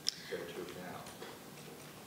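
A single sharp click just after the start, followed by a faint voice and quiet room tone.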